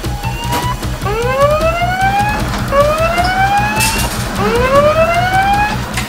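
Three rising siren-like wails in a row, each about a second and a half long, over background music with a steady beat.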